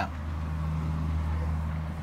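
A steady low-pitched hum, with nothing sounding above it.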